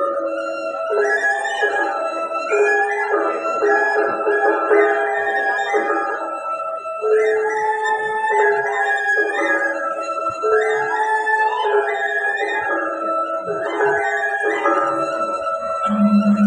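Balinese gong kebyar gamelan playing a slow lelambatan piece, the melody moving in long held notes that step up and down.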